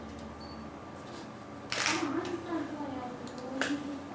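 A few sharp clicks from a computer keyboard and mouse being used at a desk. About halfway through there is a brief, indistinct voice.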